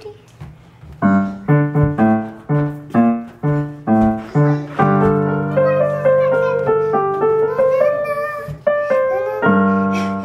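Electronic keyboard played with a piano sound. About a second in, a steady pattern of bass notes and chords begins, about two a second, then gives way to held chords under a slow melody.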